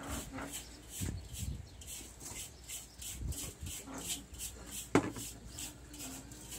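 A high chirping that pulses about four times a second, with one sharp knock about five seconds in.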